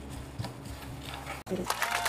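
A wooden spoon stirring a thick, wet bread-pudding mixture in a large bowl: soft scrapes and knocks, sparse at first and busier in the second half.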